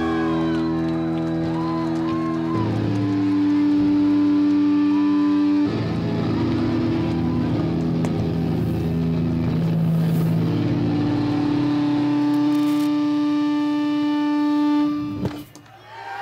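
Sustained electric drone from the stage amplifiers as a rock song ends: held notes that shift pitch a few times, cut off suddenly near the end with a click.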